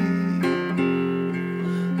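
Three-string cigar box guitar played with a porcelain slide through a vintage Teisco gold foil pickup, a short instrumental fill of held notes that shift pitch about half a second in.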